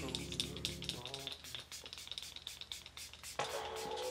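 Milk Hydro Grip setting spray pumped at a face in a rapid series of short misting hisses. Background music comes in louder about three and a half seconds in.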